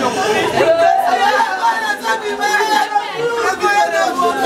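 Several voices talking and calling out over one another at once, the voices overlapping with no pause.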